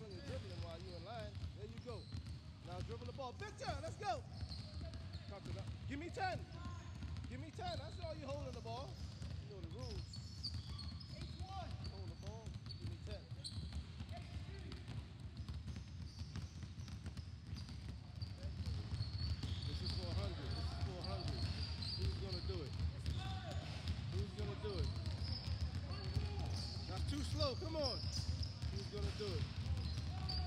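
Basketballs bouncing on a wooden sports-hall floor, several at once in an irregular patter, with players' voices in the background; the bouncing grows louder a little over halfway through.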